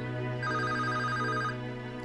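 A mobile phone ringing: a trilling electronic ringtone in a burst about a second long, over soft sustained film-score music.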